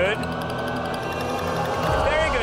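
Game-show score-countdown music: sustained electronic tones play as the score column falls, with a brief voice at the start.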